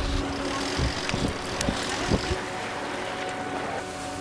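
Sea water rushing with a low rumble and a few dull thuds in the first half, under a sustained background music drone.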